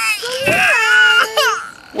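A toddler crying: one long wail that breaks off about one and a half seconds in, then a new cry starting at the end.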